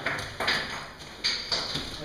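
Several sharp knocks and scrapes, hard objects knocking together in a rocky cave shaft, with the louder strikes about half a second and a second and a quarter in.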